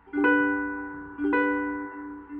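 Two chords on a plucked acoustic string instrument, struck about a second apart and each left to ring out, opening a song.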